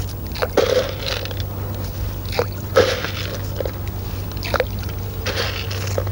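Lake water sloshing and splashing in short, irregular bursts around an angler wading in chest waders, over a steady low hum.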